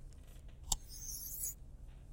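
A stylus taps once, then scratches briefly across a tablet screen as it draws a line, faint over a steady low hum.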